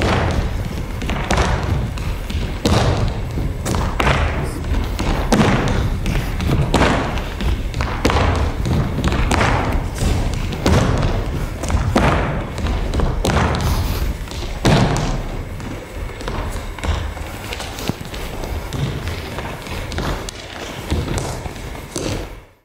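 Folk dancers' boots and shoes stamping and stepping on a stage floor in a steady dance rhythm, a heavier stamp a little over a second apart with lighter steps between.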